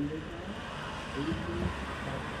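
Street traffic: a car drives past close by with low engine rumble and tyre noise, over a background of faint passersby voices.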